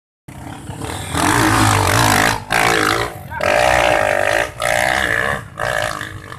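Trail motorcycle engine revved hard in a series of about five bursts, each about a second long, with short drops in between.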